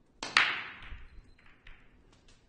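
Break shot in Chinese eight-ball. The cue tip strikes the cue ball, then a loud, sharp crack comes as the cue ball smashes into the racked balls. A few lighter clicks follow as the scattering balls knock into each other and the cushions.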